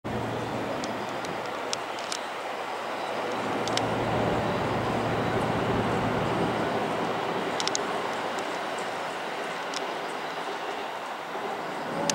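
Meitetsu 3300-series electric train standing at a station platform with its equipment running: a steady mechanical noise with a low hum at first, swelling for a few seconds in the middle and then easing. A few sharp clicks sound over it.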